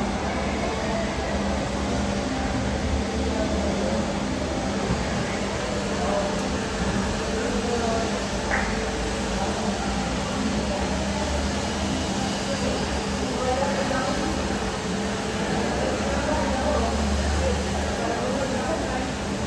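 Boeing 737 MAX jet airliner with CFM LEAP-1B engines taxiing at low power: a steady rumble and hum from its engines.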